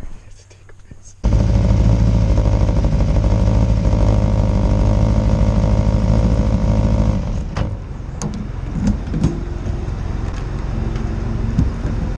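Motorcycle engine running, starting suddenly about a second in, loud and steady with a rough pulsing exhaust note; it drops to a quieter run about seven seconds in, with a few short clicks after.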